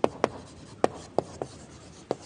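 Chalk writing on a blackboard: about five sharp, irregularly spaced taps as the chalk strikes and catches on the board, with faint scratching between.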